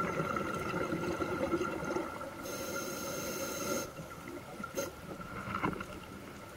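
A scuba diver breathing through a regulator underwater: a gush of exhaled bubbles for about two and a half seconds, then an inhale hissing through the regulator for about a second and a half, over a faint steady tone.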